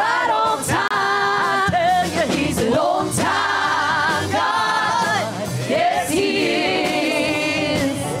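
Gospel vocal group singing together in harmony, with several long held, wavering notes.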